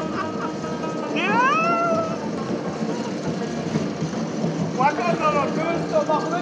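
A person's voice giving one drawn-out, rising whoop about a second in and a few short yelps near the end, over steady background noise.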